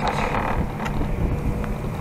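Chairlift running: a steady low mechanical hum, with wind noise on the microphone.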